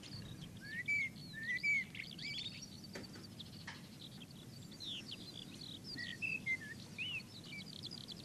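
Small birds chirping and whistling in quick, scattered short notes and glides, with a rapid trill near the end, over a steady background hiss.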